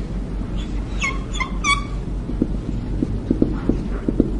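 Whiteboard marker squeaking on the board in a quick run of short, high, pitched squeaks about a second in, then faint light ticks of the marker as the writing goes on.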